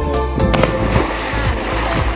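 Background music, with a burst of rushing noise about half a second in that fades away over the next second.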